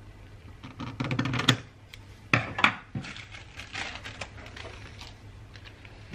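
Scissors cutting a developed roll of film negative into strips, with two sharp snips about two and a half seconds in and smaller clicks from the film strips being handled, over a low steady hum.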